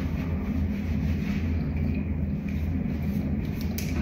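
Steady low hum and rumble of background room noise, even throughout with no distinct events.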